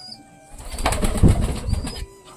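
Domestic pigeons cooing at close range in a small room, growing louder from about half a second in.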